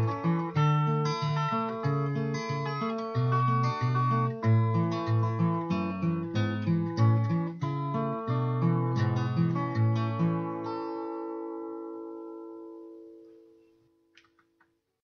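Instrumental outro on acoustic guitar: a run of notes, then a final chord about ten seconds in that rings out and fades away.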